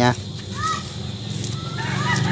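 Chickens calling in the background: a short rising-and-falling call about half a second in, then a longer, drawn-out crow-like call starting near the end, over a steady low hum.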